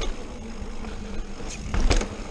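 Mountain bike rolling along a sandy dirt trail, heard through a camera mounted on the bike: a steady rumble of wind and tyre noise, with a few light rattles and a sharp knock of the bike jolting over a bump near the end.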